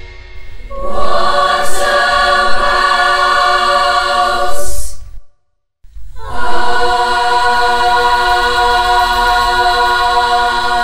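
A choir singing long held chords. The singing breaks off for about half a second midway, then a new sustained chord begins.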